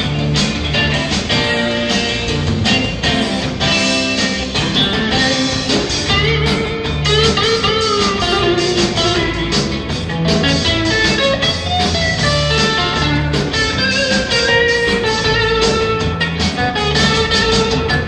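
Live rock band playing an instrumental passage: a lead electric guitar solo with bent, gliding notes over bass guitar and drums.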